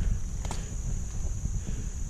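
Gloved hand rummaging in dirt and trash debris right at the microphone: low, uneven rumbling handling noise with a small click about half a second in.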